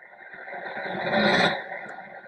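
A whoosh sound effect accompanying an animated title graphic. It swells over about a second and a half and then drops away sharply.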